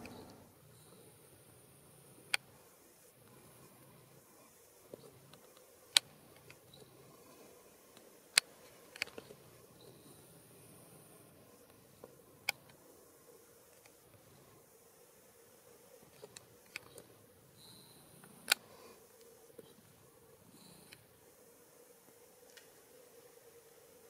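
Quiet background broken by about a dozen sharp, isolated clicks or snaps, irregularly spaced a second or more apart.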